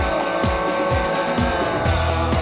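Rock band playing live: distorted electric guitars, bass and drums, with a steady kick-drum beat about twice a second.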